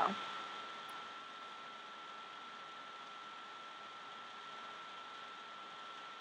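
Steady low hiss with a faint, steady high-pitched whine: the background noise floor of the recording, with no distinct sound event.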